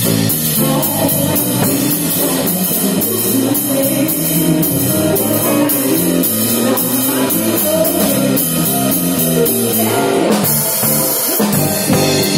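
Live rock band playing an instrumental passage: a drum kit close at hand keeps a steady beat of cymbal strokes under electric guitar and bass.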